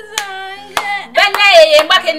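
Two sharp hand claps about half a second apart, then a woman talking loudly and excitedly, over background music.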